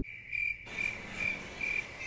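Crickets chirping, a single high chirp repeating about twice a second: the stock 'awkward silence' cricket effect laid over a joke that falls flat.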